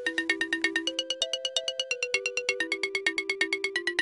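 Music: a light tune of quick, evenly repeated notes, about six a second, over held tones.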